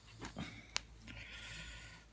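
Faint handling and rubbing of a metal picture frame with a microfiber cloth, with one sharp click a little before the middle and a soft steady hiss through the last second.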